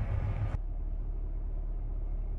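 Steady low rumble with a light hiss over it; the hiss thins out about half a second in.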